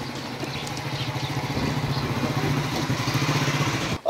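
Small motorcycle engine running steadily as it rides closer, growing gradually louder.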